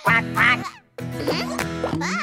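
Children's cartoon soundtrack music with a short, loud cartoon vocal sound effect at the start. The music drops out for a moment just before a second in, then comes back.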